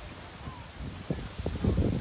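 Wind buffeting the phone's microphone over a steady hiss of small surf, gusting harder near the end.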